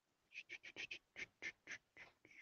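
Faint keyboard keystrokes, about eight quick irregular taps over a second and a half.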